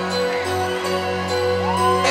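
Live rock band playing a soft, slow intro: sustained keyboard chords over a steady low bass note. Near the end a saxophone slides up into a long held note.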